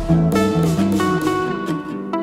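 Background music: a plucked string instrument, likely guitar, picking out a run of separate notes.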